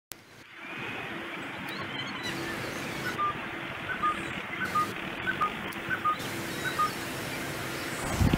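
A bird repeating a short two-note call, the second note lower, about every 0.7 seconds, over steady background noise.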